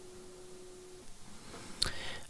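Quiet room tone: a faint hiss with a thin steady hum that cuts off about a second in, then a short click near the end.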